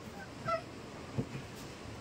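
A plastic water bottle landing on a cloth-covered table with a single light knock a little past halfway, after a brief faint tone.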